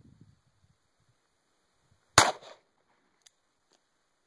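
A single .38 Special FMJ round fired from a Ruger GP100 revolver, one sharp report about two seconds in with a brief echo trailing off.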